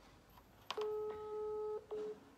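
Telephone call-progress tone from a phone's speaker while an outgoing call connects: a click, then a steady beep about a second long, and a short second beep of the same pitch just before the end.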